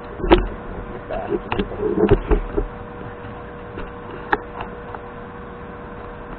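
Handling noise from a camera being repositioned right at the lathe's tool post: a few sharp knocks and clicks with short scuffs between them, over a steady hum.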